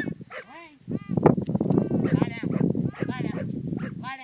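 Dog barking over and over in short, arching barks, over a steady low rumble.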